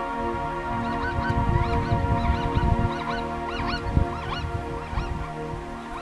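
Plains zebras calling, a run of many short, overlapping yelping barks that rise and fall in pitch, thinning out near the end, over steady background music.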